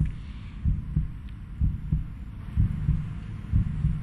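A suspense heartbeat sound effect played under a results reveal: low, muffled thuds repeating a few times a second.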